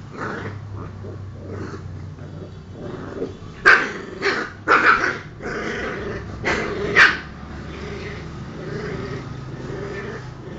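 Two small dogs fighting: steady low growling throughout, broken by a cluster of short, sharp barks between about four and seven seconds in.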